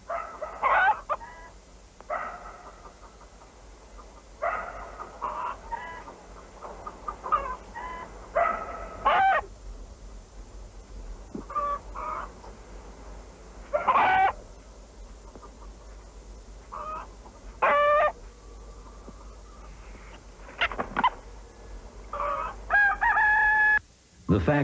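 Domestic chickens calling: a string of separate clucks and squawks every second or two, a few of them drawn out, with a longer held call near the end.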